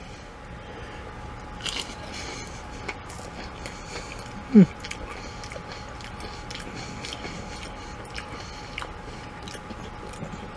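A person chewing a tater round coated in dipping sauce and crushed potato chips, with small crunches throughout. About halfway through there is a short, falling hum of the voice.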